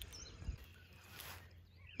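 Quiet outdoor ambience with a few faint bird chirps near the start and a brief soft rustle a little past the middle.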